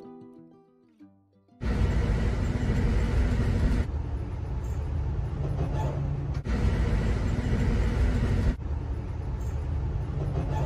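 Guitar music fades out, then a loud, steady rumble and roar of a moving Amtrak passenger car heard from inside, with a low steady hum under it. The noise breaks off briefly three times and resumes.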